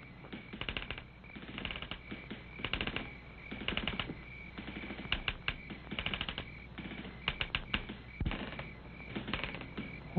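Quiet ambience with short bursts of rapid clicking, roughly one burst a second, over a faint steady high-pitched tone.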